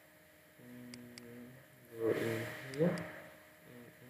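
A man's voice, quiet and indistinct, in two short stretches, with two light clicks about a second in.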